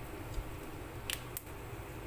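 Cumin and fenugreek seeds frying in oil in a steel pan on low heat, a faint steady sizzle with a few sharp ticks, two of them close together a little past the middle.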